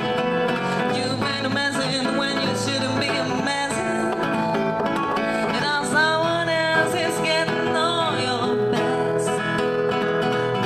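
Live acoustic guitar played steadily as accompaniment, with a woman's singing voice over it, clearest in the second half.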